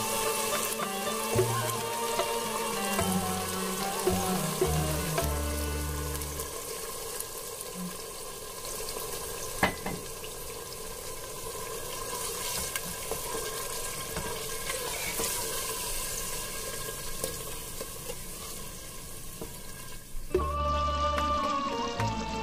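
Marinated mutton frying in hot oil with fried onions, a steady sizzle while it is stirred with a wooden spatula over high heat. One sharp knock about ten seconds in.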